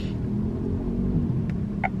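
A car's engine running, heard inside the cabin as a steady low rumble.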